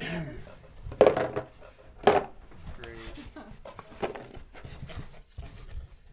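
Mobile phones being dropped one at a time into a box: a few sharp knocks, the loudest about one and two seconds in and another near four seconds.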